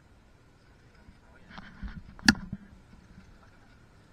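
A quiet stretch with faint rustling, broken by a single sharp click a little over two seconds in.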